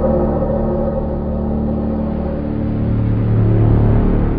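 Dramatic title music: the long ring of a struck gong dying away, with a deep rumble swelling toward the end.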